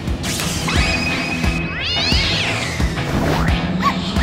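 Background music with a steady beat, over which a cat meows once, rising and then falling in pitch, about two seconds in.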